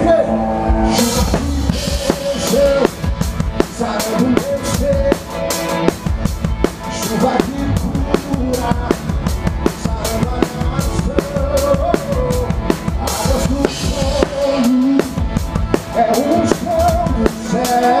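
Drum kit played live in a full band, keeping a steady driving groove of drum and cymbal hits; the drums come in about a second in, after a held chord.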